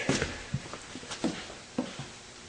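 A few scattered light knocks and shuffles, like footsteps on a hard floor, with brief faint vocal sounds in between, just after a shout dies away.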